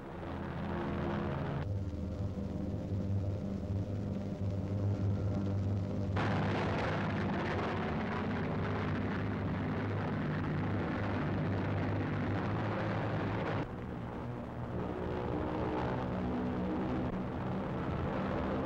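Heavy bombers' piston engines droning steadily in a deep, even hum, growing louder and rougher from about six seconds in until near fourteen seconds.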